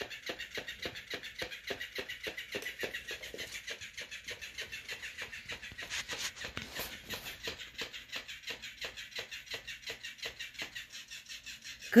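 Electric flopping-fish cat toy running, its motor-driven tail flapping in a steady rapid rhythm of about five flicks a second. There is a brief louder scuffle about six seconds in as the cat kicks at it.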